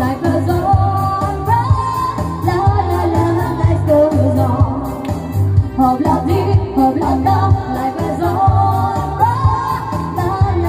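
Live band music played loud through PA speakers: a woman singing into a microphone over an electronic keyboard with a steady bass beat.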